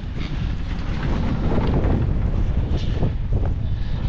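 Wind buffeting the microphone on a moving chairlift: a steady low rumble.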